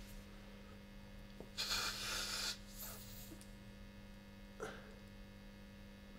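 Steady, low electrical mains hum from the guitar rig, with a brief breathy noise about two seconds in and a faint click near the end.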